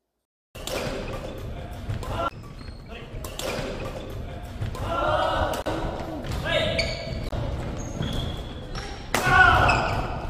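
Live sound of a doubles badminton rally in a large gym hall, starting about half a second in: sharp strikes of rackets on the shuttlecock, footfalls and short high shoe squeaks on the wooden court, and players' voices, all echoing in the hall.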